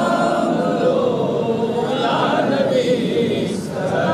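A group of men singing a devotional chant together in unison, unaccompanied, with a brief break for breath about three and a half seconds in.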